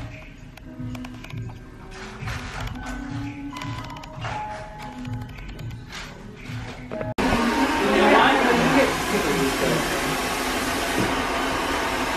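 Background music with a steady beat, cutting off about seven seconds in to the loud, steady rushing of a hair dryer running in a salon, with voices over it.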